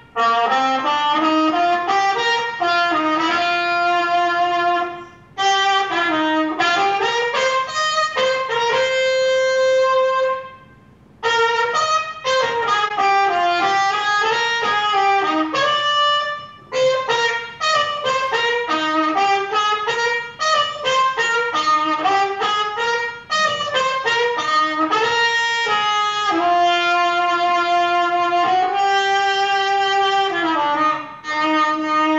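A jazz trumpet playing a single unaccompanied melody line, in phrases broken by short breaths about five and ten seconds in.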